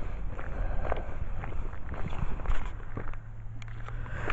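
Footsteps on a gravel path, irregular crunching steps, over a low wind rumble on the microphone.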